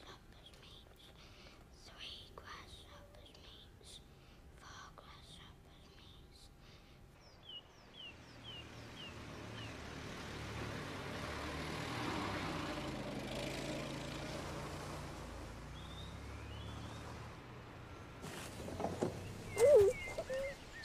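An early open motor car's engine running with a low note as the car drives past, growing to its loudest a little past the middle and then fading. A bird chirps a quick run of falling notes as the car sound comes in. Before that, a quiet stretch with faint ticks.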